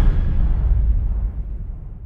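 The last deep boom of a cinematic trailer score dying away: a low rumble that fades out steadily, its higher part gone first.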